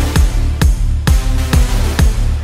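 Electronic dance music with a steady kick-drum beat, about two beats a second, over sustained bass notes.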